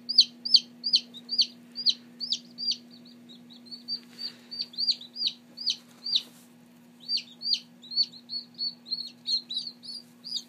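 Black Copper Marans chicks hatching from their eggs, peeping: short, high peeps that slide down in pitch, coming a few a second, sparser around three to four seconds in and pausing briefly near seven seconds. A steady low hum runs underneath.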